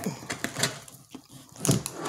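Light handling sounds of a hard plastic storage bin: faint clicks and scratches as a hand touches and brushes its drilled bottom.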